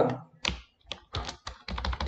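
Typing on a computer keyboard: a string of separate, irregularly spaced keystrokes.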